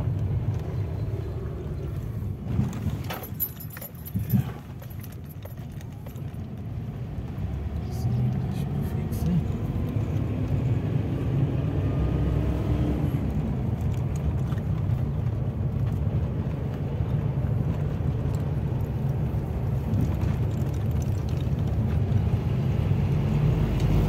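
Car cabin noise while driving: a steady low rumble of engine and tyres on the road, heard from inside the car. A few clicks and knocks come a few seconds in, and from about eight seconds the rumble grows louder while a faint engine note rises in pitch as the car speeds up.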